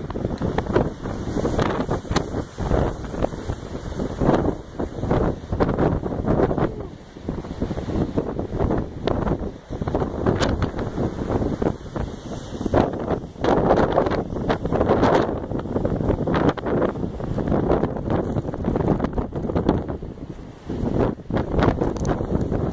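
Strong gusting wind buffeting the microphone, swelling and dropping every second or so, with waves breaking on a lakeshore underneath.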